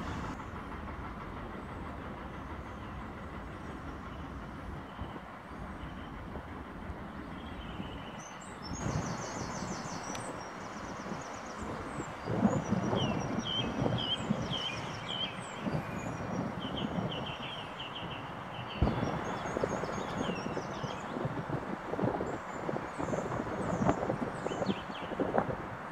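Outdoor ambience: a steady rumble, with small birds chirping in short repeated phrases from about halfway through and a few scattered knocks.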